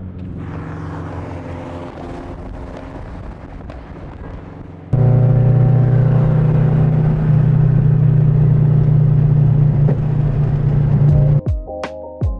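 Car engine and road noise at freeway speed, then about five seconds in a loud, steady, low engine and exhaust drone sets in suddenly and holds until just before the end.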